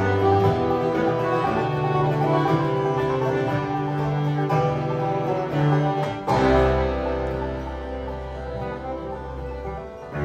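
Live acoustic string-band music, instrumental: quickly changing picked string notes over a bass line. A little past six seconds in, a low bass note is held under the band while the playing gradually quietens.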